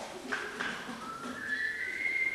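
A high whistle starts about halfway through, steps up in pitch and is held, after a couple of faint clicks.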